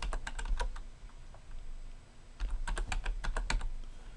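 Computer keyboard keys tapped in two quick runs while a word is typed: a handful of keystrokes at the start, a pause, then another run of keystrokes about two and a half seconds in.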